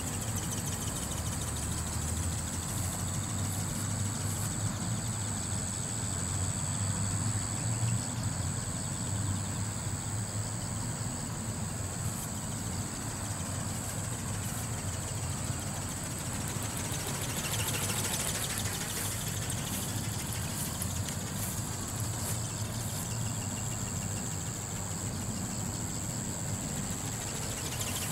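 Small electric ornithopter flying overhead, its brushless motor and flapping gearbox giving a faint steady whine over a low rumble. About two-thirds of the way through, the sound swells and fades as it passes.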